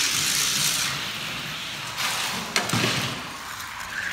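Die-cast toy cars rolling fast down a plastic racing track: a steady rushing whir of small wheels, with a sharp click about two and a half seconds in.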